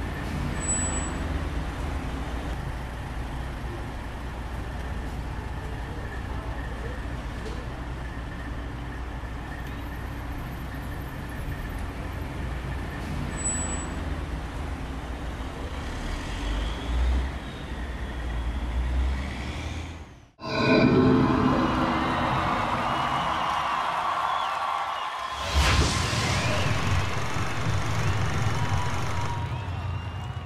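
City street ambience: a steady low traffic rumble for about twenty seconds, then a sudden cut to a louder stretch of street sound with people's voices, broken by a second short cut a few seconds later.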